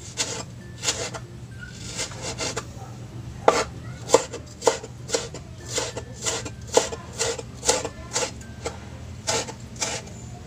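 Kitchen knife chopping a vegetable on a wooden cutting board: sharp, uneven knocks of the blade on the board, about two a second, with a short stretch of softer scraping about two seconds in.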